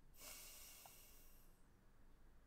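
A faint breath out through the nose, lasting about a second and a half, over near-silent room tone.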